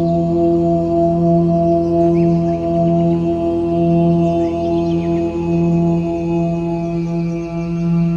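Om meditation music in 432 Hz tuning: a sustained chanted "Om" drone with steady overtones, its low tone gently swelling and easing every second or two.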